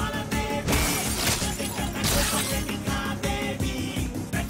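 Film background music with a steady driving beat, broken by two loud crashing hits about one and two seconds in.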